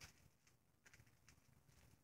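Near silence, with a few faint ticks.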